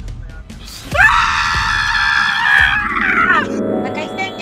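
A person screaming: one long, loud, high scream starts suddenly about a second in, breaks and drops in pitch around three seconds, then trails into a lower voiced cry, over background music.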